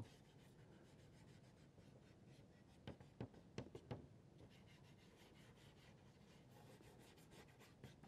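Faint scratching of a soft pastel stick rubbed on its side across paper, with a few sharper strokes about three seconds in.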